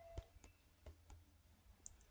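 Near silence, with a few faint isolated clicks over a low hum.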